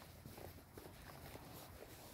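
Faint footsteps on a soft dirt path, a few steps a second, over a low steady rumble.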